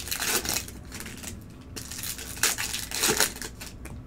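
Trading cards rustling as they are handled and stacked by hand, in two bursts: one at the start and a longer one from about two and a half seconds in.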